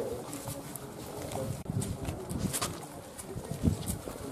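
Outdoor street ambience with a pigeon cooing a few times.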